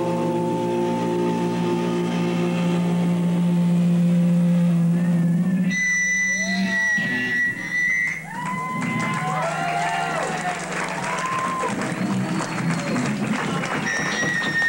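Live rock band with electric guitar: a held chord rings for the first five or six seconds, then gives way to a high steady tone and swooping, sliding pitches.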